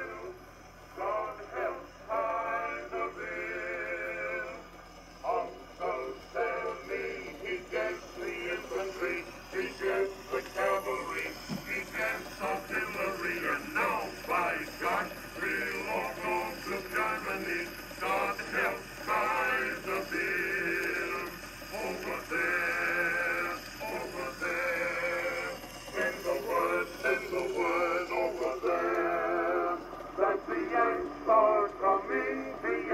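Edison Diamond Disc phonograph playing an acoustic-era record of a male chorus singing a medley of army camp songs. The sound is thin and narrow, with no deep bass and little treble.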